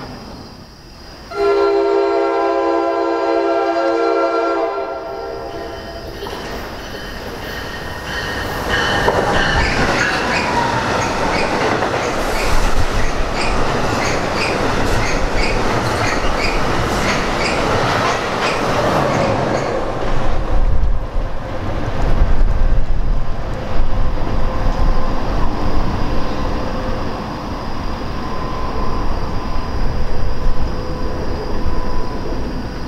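A train horn sounds one long blast about a second in. A passenger train of multilevel coaches then rushes past at speed, its wheels clicking rhythmically over the rail joints under a loud, continuous rumble.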